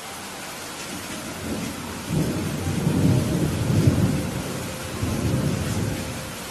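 Steady rain with a long roll of low thunder that builds about two seconds in, peaks in the middle and swells once more before fading near the end.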